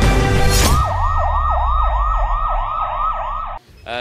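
An electronic emergency siren in a fast yelp, sweeping up and down about three times a second over a low steady hum, following the last moment of intro music; it cuts off abruptly near the end.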